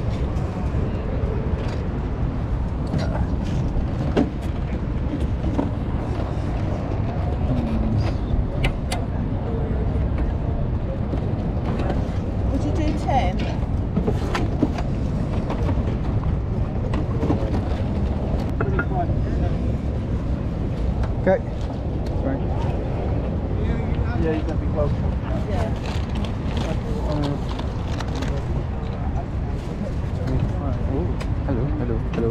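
A steady low rumble of wind buffeting the microphone across an open field, under faint voices of people nearby. A few sharp knocks and clicks come from handling.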